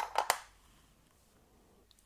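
A few light clicks in the first half second as small 3D-printed aluminium parts are set down on a plastic kitchen scale platform, with one faint click near the end.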